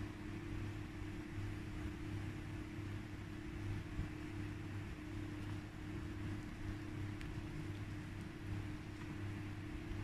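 Steady low hum with a faint even hiss, with no distinct sounds over it: background room tone.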